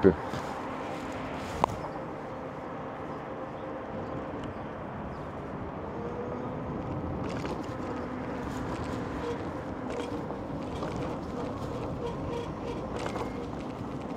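Steady road and traffic noise heard from a moving e-bike, with a faint steady hum underneath and one sharp click about two seconds in.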